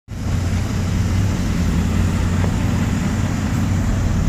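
Rally truck's engine running at low revs as the truck moves slowly, towing a car on a strap, with a steady low hum throughout.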